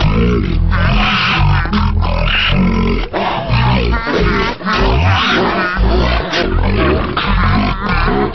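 Cartoon pigs laughing and snorting, the oinks slowed down into deep, drawn-out grunts, layered over music.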